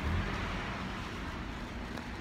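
Steady low rumble of outdoor street background noise picked up on a handheld phone microphone.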